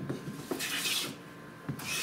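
Stanley Bailey smoothing plane cutting shavings from the face of a twisted, knotty pine board: two strokes, each about half a second long, roughly a second apart.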